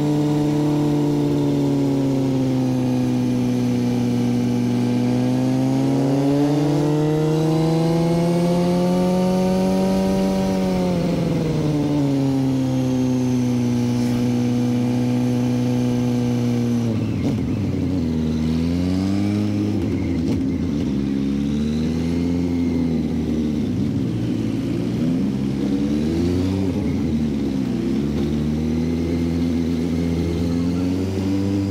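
Suzuki motorcycle's engine heard from the rider's seat, running at moderate revs. The pitch rises about six seconds in and eases back a few seconds later. In the second half the revs fall lower and waver up and down as the bike slows on the way into a village.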